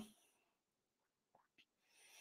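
Near silence: a pause between spoken sentences, with only faint room tone.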